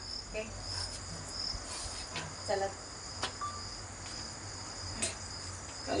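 Crickets chirping steadily in a continuous high trill, with a couple of sharp clicks and a brief faint voice sound.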